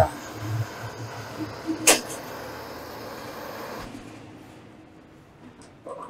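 Handheld gas torch on a fuel can hissing steadily as it reheats a soldered copper pipe joint to melt the solder and free the fitting. A single sharp metallic clank comes about two seconds in, and the hiss stops about four seconds in.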